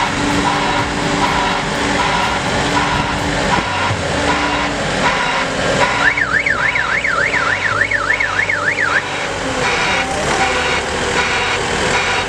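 Wacker Neuson dual-view dumper's engine running as it drives up. About halfway through, a warbling collision-warning alarm sounds for about three seconds, rising and falling about three times a second. It signals that a pedestrian has been detected within three metres of the dumper.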